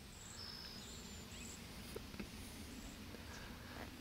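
Faint outdoor field ambience: a low steady background with a few brief, thin high chirps, and a couple of soft clicks about two seconds in.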